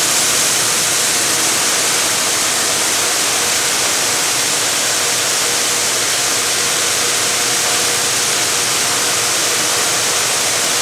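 Auger running steadily, conveying soybean seed up into an air seeder's tank: an even, loud hiss of seed flow with a faint steady motor hum under it.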